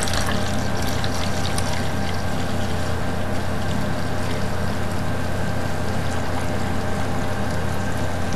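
Green liquid rust remover poured in a steady thin stream from a plastic bottle into a plastic measuring jug, trickling continuously without a break.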